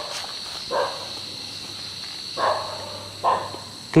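Steady high-pitched chirring of night crickets, broken by three short, louder sounds about a second in, midway and shortly after.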